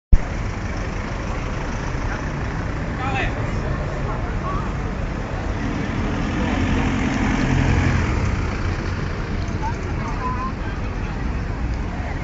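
A 4x4 vehicle drives past close by, its engine and tyres growing louder to a peak a little past halfway and then fading, over steady street traffic noise and crowd chatter.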